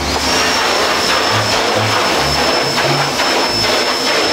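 Loud, steady machine noise of screen-reclaiming equipment: a rushing hiss with a single even, high whine over it. It starts suddenly as the door to the reclaim room opens.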